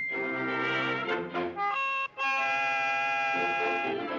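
Early-1930s cartoon score: a band with brass to the fore playing a run of notes, breaking off briefly about two seconds in, then a long held brass chord.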